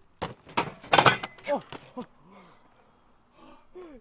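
A BMX bike landing on a plywood grind box with pipe coping: several sharp knocks and clatters in the first two seconds, the loudest about a second in, as the rider slides off the box. A man's short 'Oh' follows.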